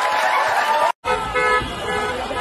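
Crowd applauding and cheering, cut off abruptly about a second in. After a brief gap, a car horn sounds over street crowd noise.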